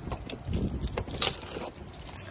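Keys jangling, with scattered sharp clicks and rustling over a low rumble.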